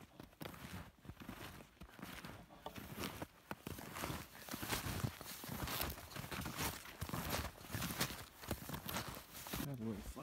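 Snowshoes crunching through snow in a steady run of walking steps.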